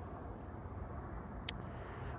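Steady low background rumble outdoors, with a faint click about one and a half seconds in.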